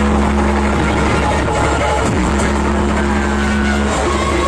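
Loud DJ sound system playing electronic dance music, here a long held bass drone with a steady higher note over it that breaks off briefly about two seconds in.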